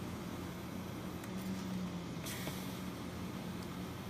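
A ReVel portable ventilator running: a steady low hum that swells for about a second as a breath is delivered, followed by a short hiss.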